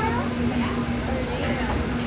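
Indistinct background voices in a restaurant, several short wavering voices over a steady wash of noise and a constant low hum.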